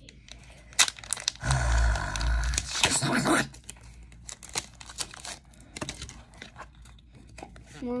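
A foil trading-card booster pack being torn open. It crinkles loudly for about two seconds, starting a second and a half in, then gives lighter crinkles and clicks as the cards are slid out of the wrapper.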